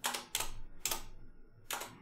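Computer keyboard keys being typed: about four separate keystrokes at uneven spacing.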